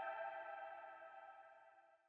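The last sustained chord of the outro music fading away to silence.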